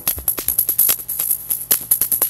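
Electronic drum-machine music run through a Snazzy FX Tracer City effects pedal: a fast run of crisp, hi-hat-like ticks over a steady low tone.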